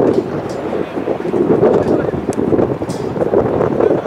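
Wind buffeting the microphone in uneven gusts, with a few faint short knocks.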